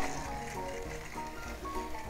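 Quiet background music, a string of short held notes changing every fraction of a second.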